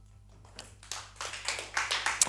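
Applause from a small group in a studio: scattered hand claps begin about half a second in and grow quickly denser and louder at the end of a live song.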